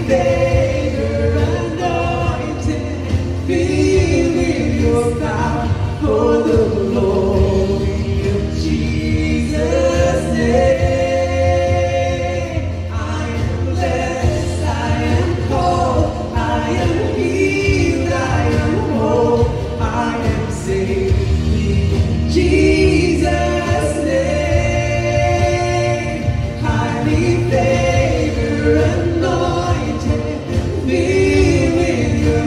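Live worship band playing a contemporary Christian song: a woman singing lead over keyboard, acoustic guitar and drums, with the music running continuously and loudly.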